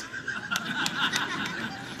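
A person laughing quietly, in soft breathy snickers.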